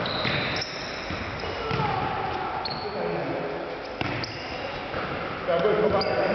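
Indoor futsal play: a ball being kicked and bouncing on the hard sports-hall floor a few times, with shoe squeaks and players' shouts, all echoing in the gym.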